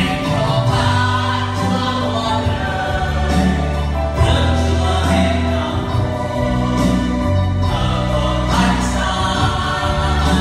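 Christian worship song: singing with electronic keyboard accompaniment, over long held low bass notes.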